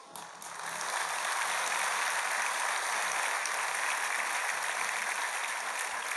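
Studio audience applauding. The clapping builds up over the first second, holds steady, and eases off near the end.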